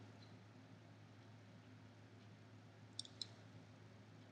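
Near silence: a low steady hum, with two faint short clicks close together about three seconds in.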